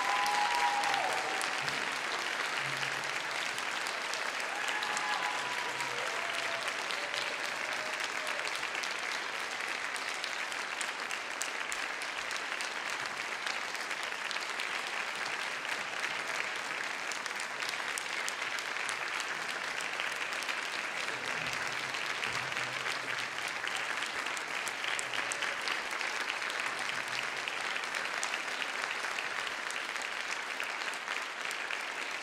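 Audience applauding steadily, with a few short cheers in the first several seconds.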